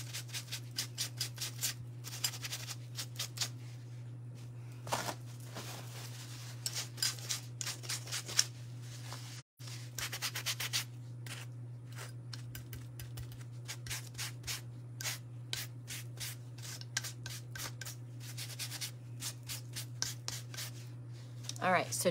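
Paper towel rubbed in quick strokes over wooden earring blanks scorched by torch paste, wiping off the charred residue; the rubbing comes in spells of rapid strokes with short pauses between. A steady low hum runs underneath.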